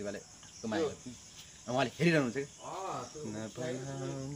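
A man talking in Nepali, in short phrases with brief pauses, over a faint steady chirring of insects.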